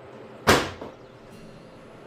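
A single sudden loud bang about half a second in that dies away quickly: a deliberate noise made to test a puppy's startle reaction.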